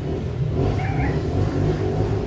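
A steady low rumble in the background, with faint higher sounds wavering over it about a second in.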